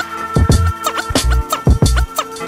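Hip hop beat with a heavy bass drum and record scratching: quick back-and-forth sweeps in pitch cut repeatedly over the beat.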